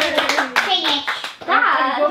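Hand clapping with voices cheering over it in drawn-out calls; the clapping thins out and stops a little past the middle, leaving a voice.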